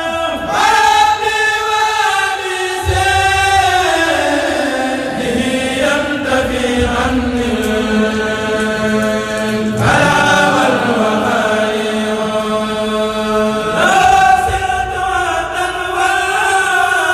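A kourel, a group of men, chanting a Mouride qasida (khassaide) together, unaccompanied. Long, held, gliding sung phrases, with a long held low note in the middle and fresh phrases starting about half a second, ten and fourteen seconds in.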